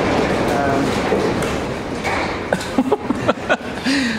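Gusty wind noise: a dense low rumble that eases a little after about two seconds, with a few short knocks in the second half.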